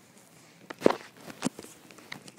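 Two sharp knocks about half a second apart, the first the louder, with a few lighter taps around them: toy figures and the handheld camera being handled and bumped.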